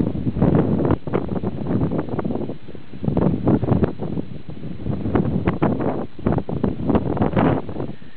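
Wind buffeting the camera microphone in irregular gusts.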